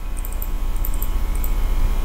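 A steady low hum, with a few faint, sparse clicks of a computer keyboard and mouse being worked.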